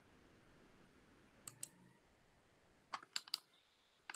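Faint clicking at a computer, two clicks about one and a half seconds in, then a quick run of four or so clicks near three seconds.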